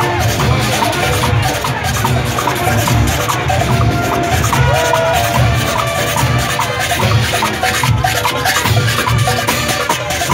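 Junkanoo band music: hand-held metal cowbells clanging in a fast rhythm over pounding drums, with held and sliding tones from horns and whistles on top.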